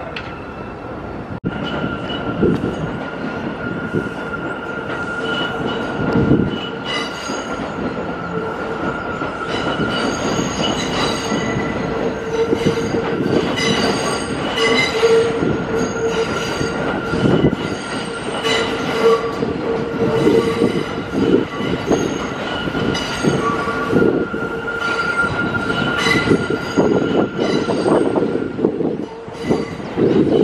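New York City subway train running on the tracks, its wheels squealing in high-pitched tones that come and go over a steady rumble and whine from the cars.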